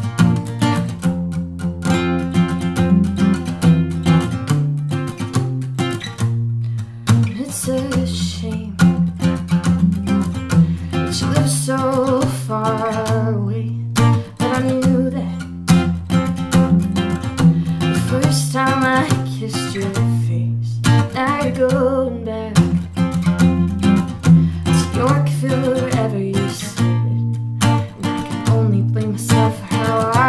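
Acoustic guitar strummed in a steady chord pattern, with a woman singing a melody over it in phrases.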